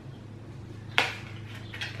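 A single sharp plastic click about a second in from handling an opened plastic supplement bottle and its cap, with a couple of faint ticks near the end, over a low steady hum.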